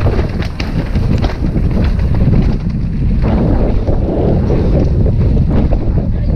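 Wind buffeting the on-board camera microphone of a downhill mountain bike at race speed, with a steady rumble of tyres on a dirt trail. Sharp clicks and rattles of the bike over rough ground come thick in the first few seconds, then thin out.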